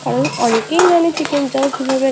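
A spatula stirring and scraping chopped onions and vegetables around a steel wok as they fry with a sizzle. The scraping gives wavering squeaky tones, and the spatula clicks against the pan now and then.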